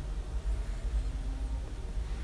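Low steady hum with faint background noise: room tone with no distinct event.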